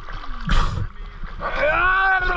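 A brief splash of water about half a second in, then a man's long drawn-out shout starting about one and a half seconds in, one held note that rises and then falls in pitch.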